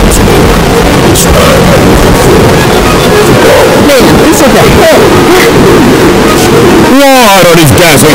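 Heavily distorted, clipped cartoon character voices, pinned at full loudness the whole time, with a shouted cry that rises and falls in pitch about seven seconds in.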